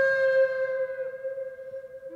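Wooden Native American-style flute holding one long note that fades away near the end.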